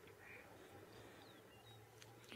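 Near silence of open bush with a few faint, brief bird chirps, one a short falling whistle.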